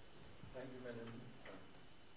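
A faint, distant voice saying a few words for about a second, over quiet room hum.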